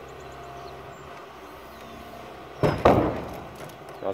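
John Deere excavator's diesel engine running steadily, then about two and a half seconds in a loud crash and crumbling rattle of concrete as the silo wall is struck and cracks apart, dying away over about a second.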